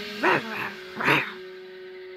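Cartoon sharptooth dinosaur growl-yips: two short calls that rise and fall in pitch, about a quarter second and a second in. They are voiced as dinosaur-language speech, not words. A faint held music note follows.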